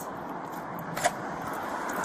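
Road traffic: a steady hum of cars going by on a busy street, with a single short click about a second in.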